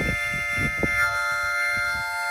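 Harmonica holding one sustained chord of several notes, with irregular low rumbles underneath.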